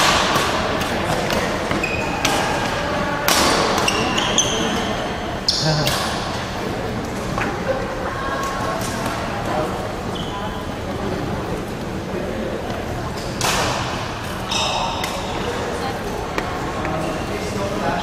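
Badminton doubles play on a hardwood gym court: sharp racket strikes on the shuttlecock and short, high sneaker squeaks on the floor. These come mostly in the first six seconds and again around thirteen to fifteen seconds in, over a steady murmur of voices.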